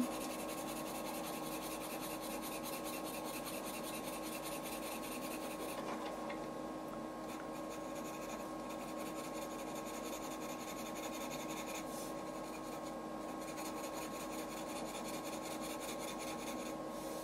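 A soft green coloured pencil hatching on paper: a steady scratching from continuous back-and-forth shading strokes.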